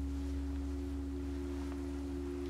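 A sustained low drone with two steady held tones over a deep bass, unchanging, like a synth pad in a film score.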